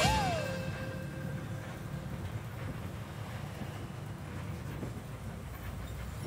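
Metro bus driving, heard from inside the cabin as a steady low rumble of engine and road noise.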